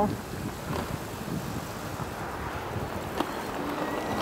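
Steady wind rush and tyre noise from an e-bike rolling along a paved street.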